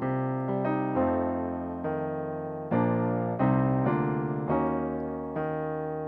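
Digital keyboard with a piano sound playing slow, sustained jazz chords, C minor 11 moving to E-flat minor 7, with the sustain pedal held. A new chord is struck about once a second, and each one rings and fades before the next.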